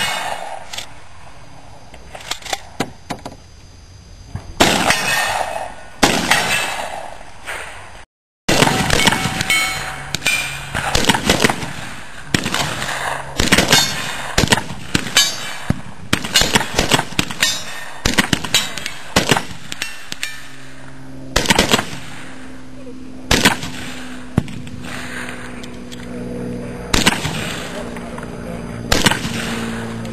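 12-gauge shotgun shots: a few loud blasts in the first six seconds, then, after a break, a long run of sharp reports and knocks from a 12-gauge firing slugs.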